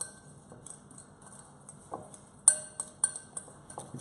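A spoon clinking and scraping against a small glass bowl while a tapenade, panko breadcrumb and oil mixture is stirred: scattered light taps, with the sharpest clink about two and a half seconds in.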